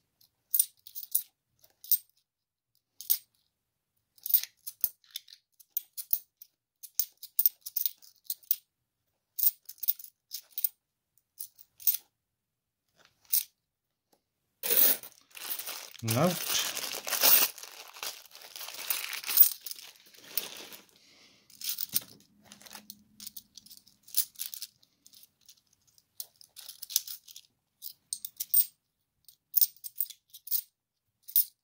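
50p coins clicking and clinking against each other as they are handled and fanned through the fingers. About halfway through, a clear plastic coin bag crinkles and tears as it is opened.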